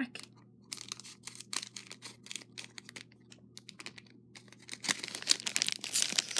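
A plastic Lego minifigure blind bag being handled and torn open, with scattered crackles of the plastic building to a dense burst of crinkling near the end.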